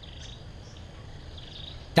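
Insects chirring steadily outdoors, a faint high-pitched drone over low background noise.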